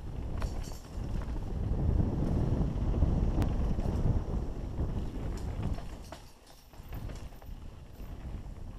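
Wind buffeting the camera microphone and tyres rumbling over a dirt trail as a mountain bike rides fast downhill, with scattered clicks and rattles from the bike. The rumble is loudest in the middle and eases off about six seconds in.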